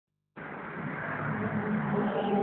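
Small 48cc two-stroke engine of an ASKATV 50cc quad running steadily, cutting in about a third of a second in.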